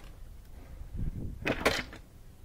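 Metal bottom plate of a Miele dishwasher being pulled off and slid out, with a short scrape of sheet metal about one and a half seconds in.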